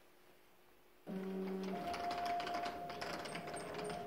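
Electronic science-fiction sound effect that starts abruptly about a second in: steady low tones under a rapid clicking chatter, with a run of short high beeps near the end.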